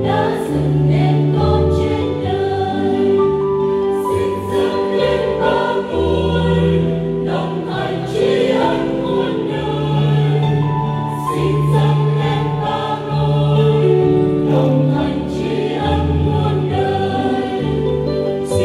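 Mixed choir of men's and women's voices singing a Vietnamese hymn in parts, in long held chords that change every second or two.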